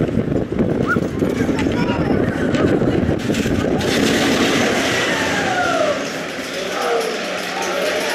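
Arrow Dynamics mine train roller coaster running along its steel track with a loud, continuous rumbling rattle, and riders' voices over it. About six seconds in, the deep rumble drops away as the train enters the building, and a few falling cries are heard.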